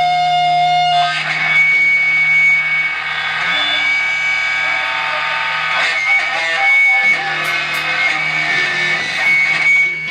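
Electric guitar played live through a Marshall stack, long notes ringing and held for several seconds over a low steady hum, with a few sharp hits in the second half.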